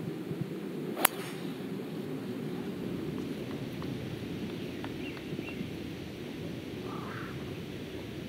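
A golf club striking the ball on a long fairway shot: one sharp crack about a second in, over steady open-air background noise.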